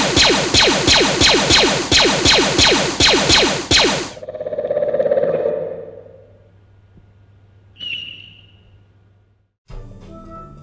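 Rapid stormtrooper blaster fire: a loud string of falling-pitch shots, about four a second, that cuts off suddenly about four seconds in. A swelling, pulsing tone follows and fades away, with a brief high chirp near the end.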